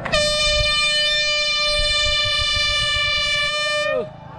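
Handheld air horn sounding one long, steady, loud blast, its pitch sagging as it cuts off near the end. It is the start signal for the competition, given straight after a one-two-three countdown.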